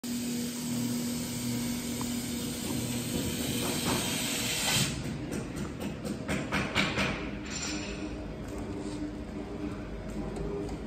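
A laser cutting machine running with a steady hiss and low hum. A string of irregular knocks comes between about five and seven and a half seconds in.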